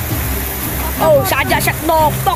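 A boat's motor running steadily at low revs over the rush of river rapids, with a young voice calling out from about a second in.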